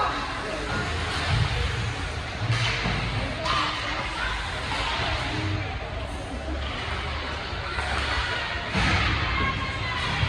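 Ice hockey game in an indoor rink: spectators' voices and calls over a steady low rumble, with a few sharp knocks of sticks and puck against the boards.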